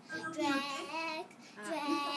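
A young girl singing in a high voice: two short sung phrases with a brief break just past the middle.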